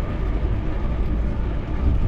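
Wind buffeting the microphone of a GoPro carried on a moving bicycle, a steady low rumble, with rolling road noise under it.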